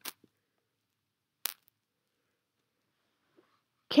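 Near silence broken by one short, sharp click about a second and a half in.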